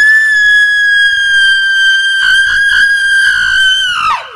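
A woman's single long, high-pitched scream, held at an almost steady pitch and very loud, falling off in pitch as it stops at the end.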